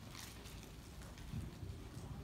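Faint footsteps of a man walking up to a pulpit, a few soft steps, with a couple of low thumps in the second half.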